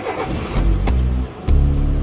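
A car engine sound effect over background music with heavy bass notes.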